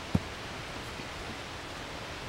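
Steady outdoor background noise with one short, low thump just after the start.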